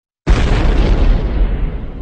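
Boom sound effect: a sudden loud hit about a quarter second in, followed by a deep rumble that fades away over the next two and a half seconds.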